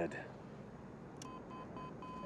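Electronic cockpit beeps from a film soundtrack, over a low background hiss. About a second in come three short high beeps, then the same tone held steady.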